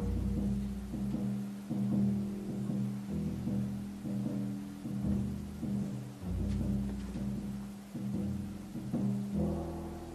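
Upright double bass plucked in low notes with a drum kit's deep drums and toms, and no saxophone, in a loose free-jazz passage. The playing winds down to a last fading note near the end.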